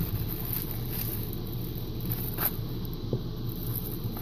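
Thin plastic bags and wrapping rustling and crinkling faintly as hands open them, with a few light crackles over a steady low background hum.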